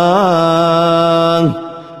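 A man's chanting voice holds one long, steady note with a small waver near the start. It is the drawn-out close of "Bismillah" in a recited ruqyah. The note breaks off about one and a half seconds in, leaving a short pause.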